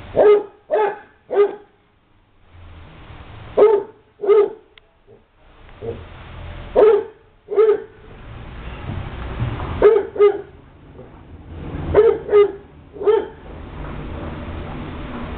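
Dog barking in short, high play barks while wrestling with another dog, in quick groups of two or three spaced a few seconds apart.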